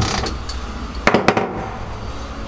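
Sharp clicks and knocks of hand work on fittings inside a boat's hull, with two loud knocks close together about a second in.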